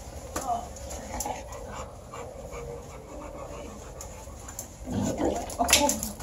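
A large bully-breed dog panting as it moves about, with a louder stretch of sound near the end.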